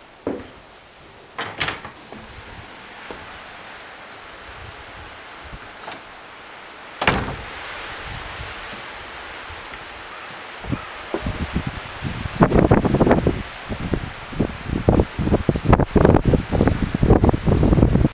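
A wooden door clunks about seven seconds in, after which a steady outdoor hiss sets in. In the second half, wind buffets the microphone in loud, irregular gusts, the loudest sound here.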